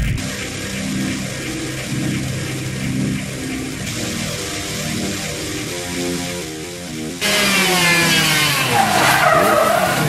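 Lancia 037 rally car's supercharged four-cylinder engine revving hard with tyres squealing, starting suddenly and loud about seven seconds in. Before that there is a quieter, evenly repeating pattern of tones.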